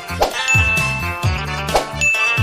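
Background music with a steady bass beat and a bright, bell-like ding ringing out about half a second in.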